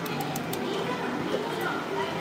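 Arcade game-centre ambience: a steady mix of electronic machine sounds and faint background voices, with a few light clicks in the first half-second.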